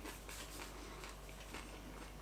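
Faint chewing of a mouthful of pizza, a few soft irregular clicks over a low steady hum.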